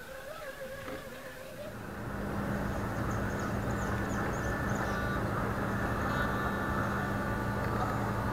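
RC scale rock crawler's electric motor and drivetrain whining steadily as the truck climbs, over a constant low hum; the sound gets louder about two seconds in.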